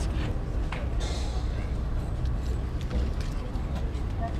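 An engine running steadily in the background, a low, even rumble, with a brief hiss about a second in.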